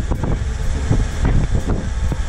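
A JAC light cargo truck's engine running steadily as it climbs a mountain road, a low rumble heard from inside the cab with road and wind noise.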